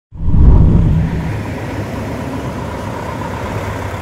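Heavy trucks' diesel engines running, loudest in the first second, then a steady drone.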